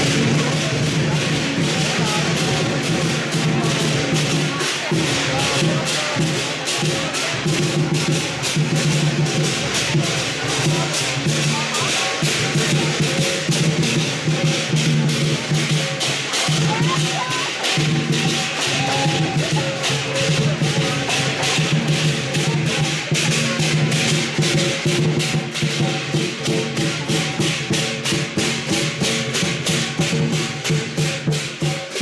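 Chinese lion dance percussion: a drum and clashing cymbals beating a fast, steady rhythm, with crowd voices mixed in.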